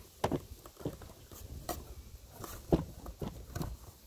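Handling noises as straps and a kayak cart are worked on a plastic kayak hull: a run of irregular clicks and knocks, the sharpest one about three-quarters of the way through.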